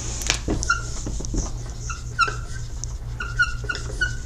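Dry-erase marker squeaking on a whiteboard as a jagged zigzag line is drawn: short, high squeaks in small groups, with a few light taps. A low steady hum runs underneath.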